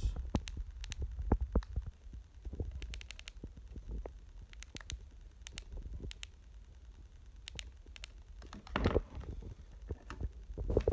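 Baofeng UV-5R handheld radio's keypad buttons being pressed, a string of small irregular clicks as a frequency is keyed in, over low handling rumble. A louder knock comes just before the end.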